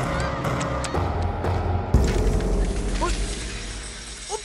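Dramatic film soundtrack: a steady low pulsing score with scattered clicks, a sharp loud hit about two seconds in that dies away, then a few short squeaky pitch glides near the end.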